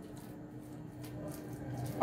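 Faint, soft squishing of a spatula stirring a thick, wet paste of soaked bread and mayonnaise in a bowl, a few strokes about half a second apart.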